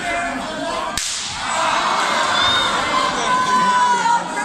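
A single sharp, slapping crack of a strike landing in a wrestling ring, about a second in, followed by the arena crowd shouting and cheering loudly.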